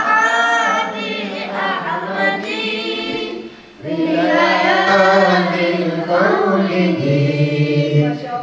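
Several voices, children's among them, singing unaccompanied in unison. There is a short break about three and a half seconds in, and then the singing comes back louder.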